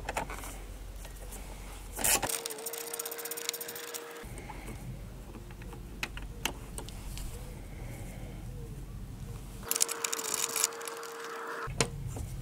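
A quarter-inch drive ratchet with a 10 mm socket clicks rapidly in two bursts of about two seconds each, a couple of seconds in and again near the end, over a steady hum, as the 10 mm nuts holding down the coolant expansion tank are undone. Light tool-handling clicks fall between the bursts.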